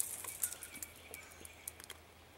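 Scattered sharp clicks and crackles, with a few faint bird chirps in the background.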